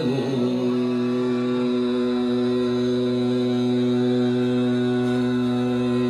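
Male Hindustani classical vocalist in Raag Yaman settling, shortly in, onto one long steady held note over the tanpura drone and harmonium accompaniment.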